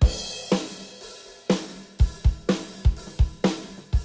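A drum kit playing a beat: kick drum and snare hits with cymbals, opening on a loud hit.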